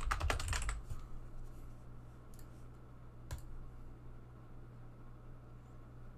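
Typing on a computer keyboard: a quick run of keystrokes in the first second, then a single sharp click about three seconds in, over a low steady hum.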